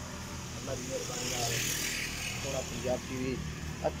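Voices talking in the background over the steady low hum of a running engine. A hiss rises and fades between about one and two and a half seconds in.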